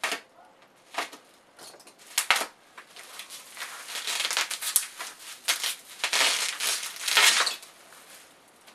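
Plastic wrapping around a beer bottle crinkling and crackling as it is cut open with a knife and pulled off. There are a few separate crackles at first, then a longer stretch of continuous crinkling near the end.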